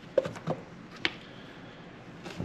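Foam RC racing tires being handled, set down and picked up on a workbench: three short, light knocks in the first second, then only quiet room noise.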